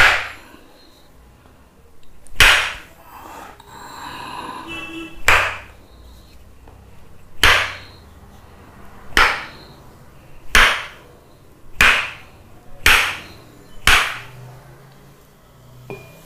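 Tok sen massage: a wooden mallet striking a wooden stick held against the back, nine sharp wooden knocks that come faster toward the end, from about every two and a half seconds to about one a second.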